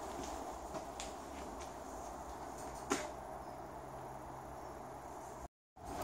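Faint steady background hum of a workshop with a few soft clicks, the clearest about halfway through. The sound drops out to silence for a moment near the end.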